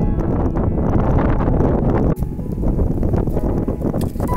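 Wind blowing on the microphone: a loud, dense rumble that breaks off sharply about two seconds in and picks up again.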